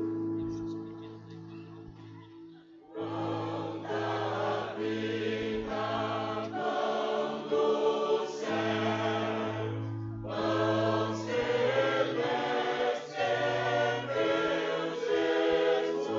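Church choir singing a hymn in Portuguese over an instrumental accompaniment of held low notes. The choir comes in about three seconds in, drops out briefly near ten seconds, then sings on.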